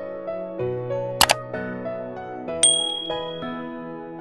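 Soft piano-like background music, with a sharp double click sound effect a little over a second in and a bright bell ding about two and a half seconds in that rings out and fades, the usual sounds of a subscribe-button and notification-bell animation.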